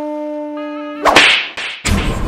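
A steady held note, like a wind instrument, stops about a second in and gives way to a loud whoosh of an added comedy sound effect. A second sudden noise comes just before the end.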